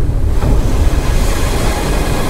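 Strong wind and sea surf on an exposed clifftop: a heavy low rumble with a rushing hiss that swells about half a second in.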